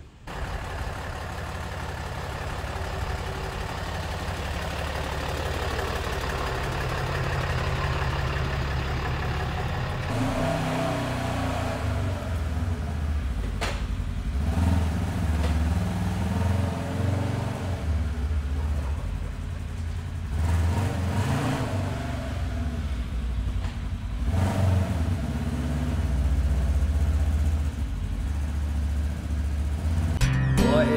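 2017 Polaris RZR S 900's twin-cylinder engine running, steady at first, then revving up and down from about a third of the way in as the side-by-side is driven at low speed. A single sharp click falls partway through.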